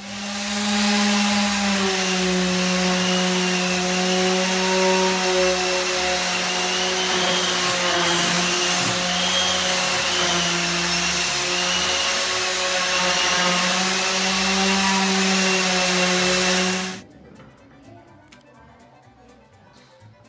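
Electric power tool motor running steadily under load, with a small drop in pitch about two seconds in. It cuts off abruptly near the end.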